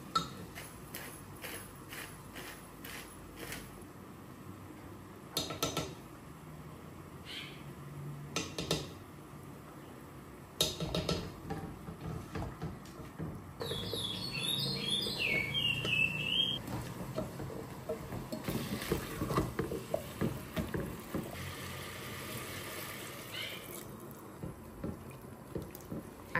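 Cooking sounds at a gas hob: a wooden spoon clicking and tapping against a metal pot, then several louder knocks. After that comes busier handling as diced potatoes are tipped from a wooden cutting board into the pot and liquid is poured in.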